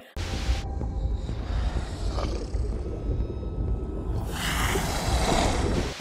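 Film soundtrack of an underwater shark scene: a deep, steady rumble of score and sound design, with a hiss swelling up over the last second and a half. The hiss is the noise given to the shark, which sharks do not really make.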